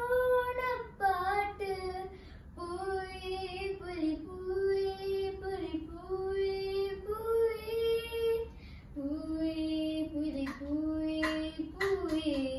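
A young girl singing a Malayalam song unaccompanied, in long held notes that step and slide between pitches.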